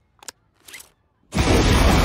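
A plastic helmet buckle clicking shut, then about a second later a sudden, loud whoosh of flames that keeps going at full strength.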